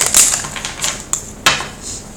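Tarot cards being shuffled in the hands: a run of quick, crisp card clicks and snaps, the sharpest about one and a half seconds in.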